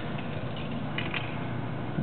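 Windshield wiper motor turning a Craftsman garden-tractor snow blower's chute, running steadily.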